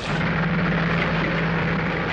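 Tank engine running: a steady deep drone under a rushing mechanical noise, cutting in abruptly at the start.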